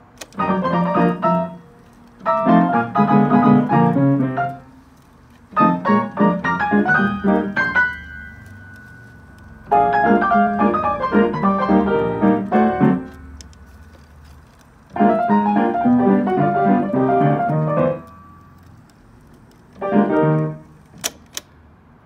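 Sherman Clay grand piano played by its Marantz Pianocorder player system from a cassette, sounding ragtime. The music comes in six short snatches, each one to three seconds long, with brief quiet gaps between them.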